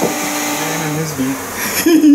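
Bee vacuum motor humming steadily, fading within the first second as a man's excited wordless voice comes in over it.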